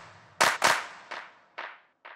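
Outro of a future house track: the kick drum drops out and two last sharp, noisy percussion hits sound, then repeat as an echo about twice a second, fading away.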